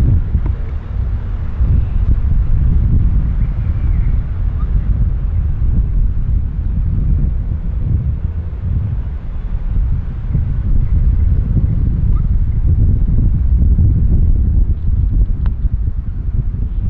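Wind buffeting the camera microphone, a loud, uneven low rumble throughout. About a second before the end comes a faint tick, the putter striking the golf ball.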